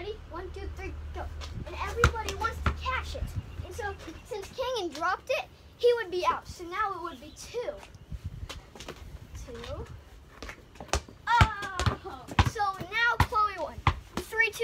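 Children calling out and laughing during a ball game, with basketballs thrown, caught and bounced, giving several sharp thuds of the ball, a few close together near the end.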